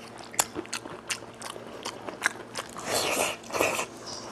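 Close-miked eating and food-handling sounds from spicy braised goat head meat: a run of sharp wet clicks and smacks, then two louder crackling, rustling bursts near the end as plastic-gloved fingers work the meat.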